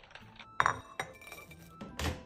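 A metal ladle clinking against a glass punch bowl of iced drink, two bright clinks about half a second apart, the first the louder, over background music.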